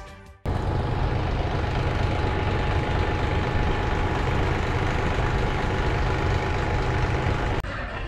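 Background music fades out, then a loud, steady outdoor rumble with hiss, of the kind a vehicle or wind on the microphone makes in an open car park, runs unchanged until it cuts off suddenly near the end.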